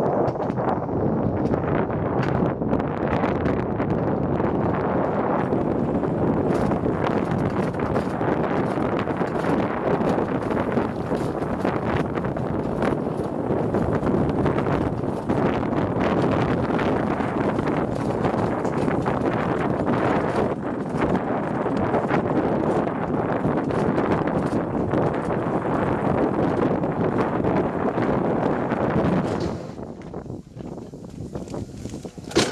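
Wiegand alpine coaster sled running fast along its tubular steel track: a steady rolling rumble from the wheels on the rails, with frequent clicks and knocks and wind on the microphone. It quietens sharply near the end as the sled slows.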